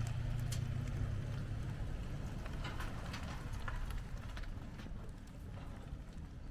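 White Toyota Tacoma V6 pickup's engine running steadily as it tows a boat trailer, heard from the trailer behind it. Scattered sharp clicks and rattles from the trailer run through the sound.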